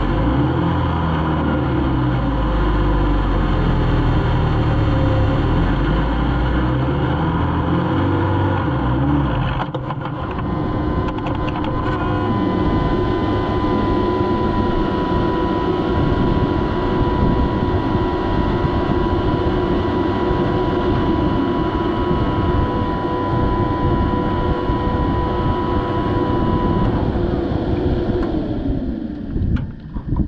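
Desert off-road race car running on a dirt road, heard from inside the cab: heavy low engine sound for the first third, then a steady mechanical whine over dense rattling. Near the end the whine falls in pitch and dies away.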